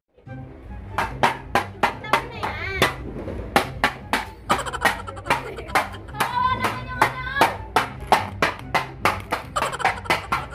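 Metal pots and pans banged repeatedly, sharp strikes coming irregularly about two or three a second after a quieter first second, over music with a steady bass line and voices shouting.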